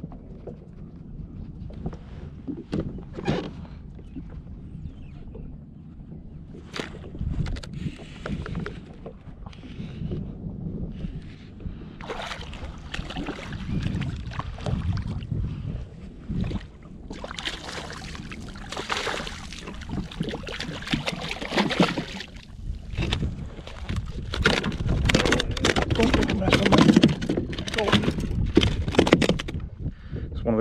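A summer flounder (fluke) being reeled in and landed into a plastic kayak: fishing reel winding with scattered clicks, water splashing as the fish comes up alongside from about halfway through, then louder knocks and thumps against the hull near the end as the fish is brought aboard.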